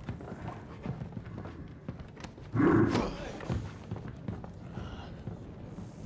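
Soundtrack of an animated drama scene: scattered light clicks and knocks, with one short, louder sound about two and a half seconds in.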